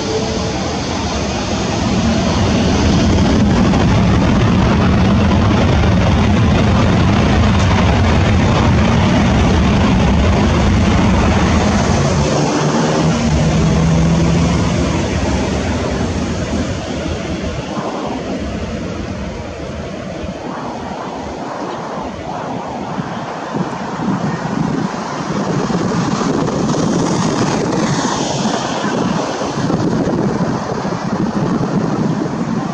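Airbus A330-300 jet engines at takeoff thrust, a loud steady roar that builds in the first couple of seconds and then fades as the airliner rolls away down the runway.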